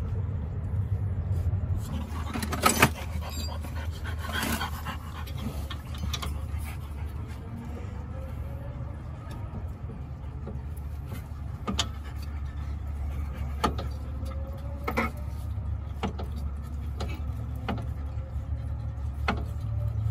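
Scattered metallic clicks and taps from hand-threading brake caliper bolts and handling the caliper and tools, over a steady low hum.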